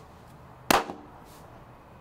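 One sharp hit about two-thirds of a second in, dying away within a fraction of a second, then only a faint steady hiss.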